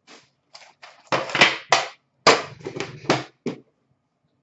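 Card boxes and a metal tin being handled and set down on a glass counter: a quick, irregular run of short knocks and scuffs, loudest in the middle.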